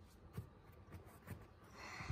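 Near silence: room tone with a few faint, soft knocks.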